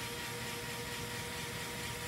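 Motor of a spin-art rig running at a steady speed while the canvas spins: an even whirring hum with a faint steady whine.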